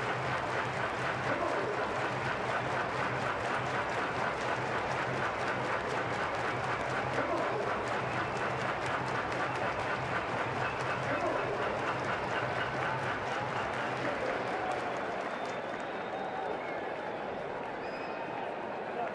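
Ballpark crowd clapping and cheering steadily at a two-out, full-count moment with the home team batting, easing off slightly near the end.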